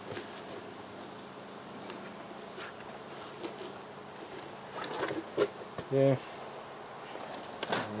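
Faint, steady buzzing of a flying insect, with a few light clicks and rustles around the middle.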